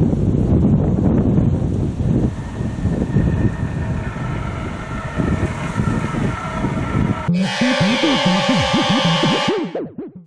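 Wind buffeting the microphone, a loud low rumble for about seven seconds. Then a music sting with sliding low tones starts suddenly and cuts off just before the end.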